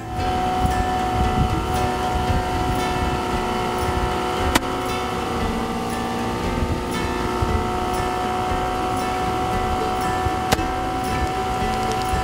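Outboard motor on a small boat running at a steady towing speed, a constant engine hum over the rush of water and wake. Two sharp knocks cut through it, about six seconds apart.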